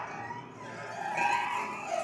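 Strings of a stripped-down piano frame played by hand, giving a swelling, sliding metallic string tone that peaks past the middle and fades toward the end.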